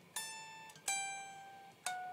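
Electric guitar playing three single picked notes high on the neck, each ringing and fading before the next. Each note is a step lower in pitch than the one before.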